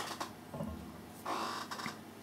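Quiet handling noises of small objects on a work surface: a click at the start, a brief scuffing sound a little past the middle, and a light click near the end.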